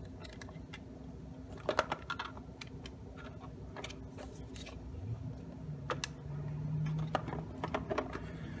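Scattered light clicks and taps of hard 3D-printed PLA plastic parts being handled as a length of filament is pushed through the box's hinge, with a small cluster of clicks about two seconds in and more near the end.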